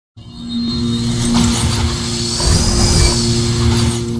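Cinematic logo-intro music: a low sustained drone with a whooshing sweep that rises and falls in the middle, starting abruptly from silence.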